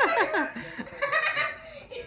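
Young child laughing hard while being tickled: a quick run of laughs falling in pitch, then higher giggles about a second in.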